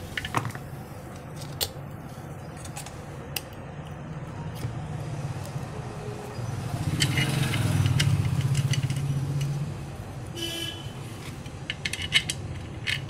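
Light metal clicks of screws and tools being handled on a ceiling fan motor's metal housing as it is screwed back together, over a steady low hum that swells louder for a few seconds past the middle.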